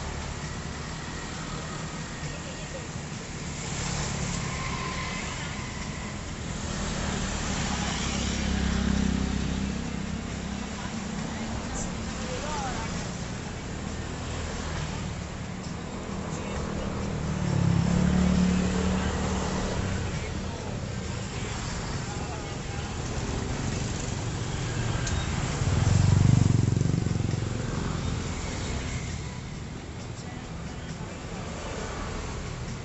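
Street traffic of motorbikes and cars passing close by, the engine and tyre sound swelling and fading with each pass. Three passes stand out as louder, the loudest near the end.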